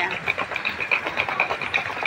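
Outdoor street noise with a steady hum of traffic and a fast, evenly repeating high-pitched ticking.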